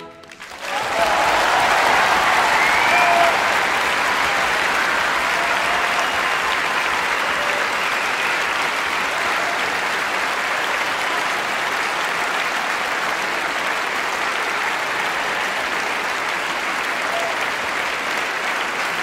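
A large concert-hall audience applauding steadily, starting about half a second in as an orchestra's closing chord stops, with a few cheers in the first few seconds.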